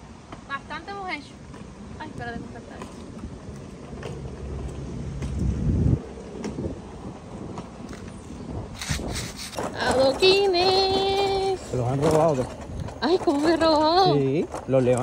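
A person's voice, unclear words with one long drawn-out vowel held at a steady pitch, over street background; earlier, a low rumble builds up and cuts off suddenly.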